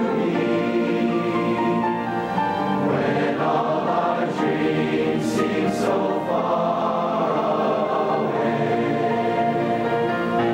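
A large mixed choir of young men and women singing in harmony, holding long notes at a steady level, with a few sung 's' sounds in the middle.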